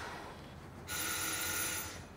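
A telephone bell rings once, starting about a second in and lasting about a second, over faint room tone.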